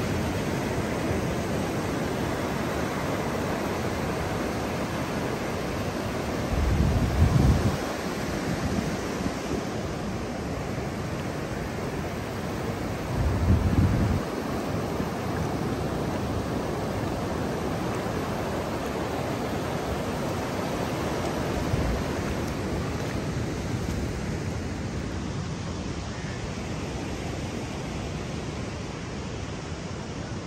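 Ocean surf washing up a sandy beach: a steady rush of small breaking waves. There are two brief low rumbles, about seven and thirteen seconds in, and the wash grows a little fainter near the end.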